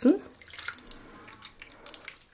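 Tomato sauce poured in a thin stream from a saucepan into stuffed peppers in a pot: a faint trickling with small drips.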